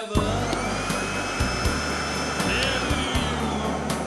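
Vacuum cleaner motor whining, its pitch sliding up and down as a mock guitar part, over a rock and roll backing of drums and bass.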